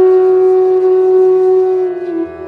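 Background music: a flute holding one long, steady note.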